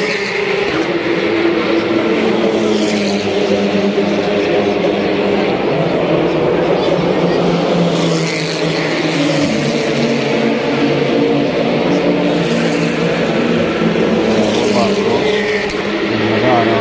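Race car engines running past on the circuit's main straight, their pitched notes shifting and overlapping as the cars go by, with grandstand crowd chatter underneath.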